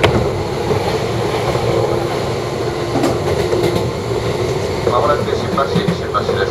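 Inside a JR East 185 series electric train carriage on the move: steady running noise of motors and wheels on the rails, with a single sharp knock at the very start.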